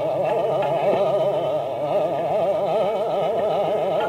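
Male Hindustani classical voice singing a bada khayal phrase in Raag Darbari, the held note shaking rapidly and evenly in pitch, over a steady drone.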